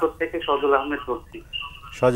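A caller's voice speaking briefly over a telephone line, thin and narrow in tone, with a pause about a second in.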